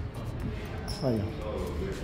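Low, dull thumps of footsteps while a handheld camera is carried across a hard stone floor, with a man saying one short word about a second in.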